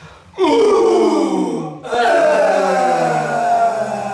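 A small group of voices shouting the haka call "Hou!" in unison twice, each a long drawn-out cry falling in pitch; the second starts about two seconds in.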